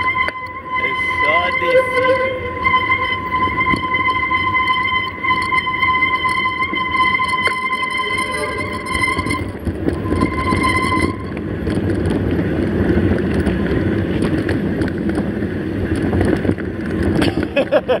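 Mountain bike rolling down a dirt road: wind on the microphone and the rumble of tyres on the dirt, with a steady high whine that stops about eleven seconds in, after which the rumble grows louder.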